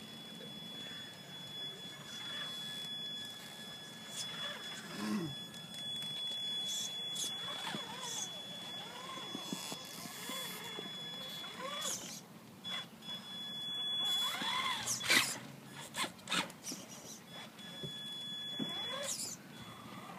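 Traxxas Summit RC rock crawler's electric drive giving a high, steady whine that breaks off now and then as it crawls slowly over wooden boards. A few knocks come near the end as its tyres drop onto the planks.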